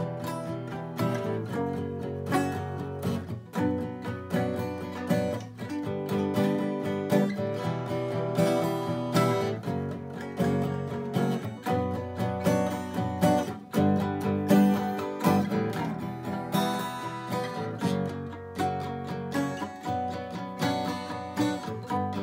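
A balalaika and an acoustic guitar played together, a fast strummed and plucked folk-rock jam with no singing.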